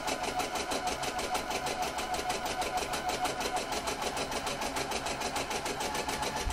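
Electric sewing machine running steadily, sewing a zigzag stitch along the edge of sheer fabric, its needle going in a fast, even rhythm.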